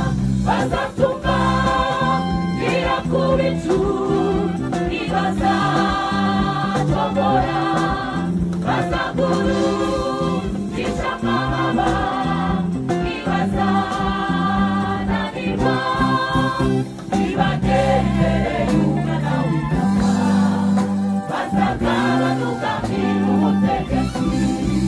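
Women's gospel choir singing together into microphones, in sung phrases of a couple of seconds each with short breaks between them.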